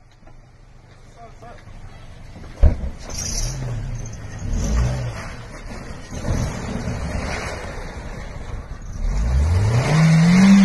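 A Toyota Yaris hatchback's engine revving in repeated rises and falls as it drives off, with a sharp door slam about two and a half seconds in. Near the end the engine revs up hard and holds high with the car stuck in a snowbank.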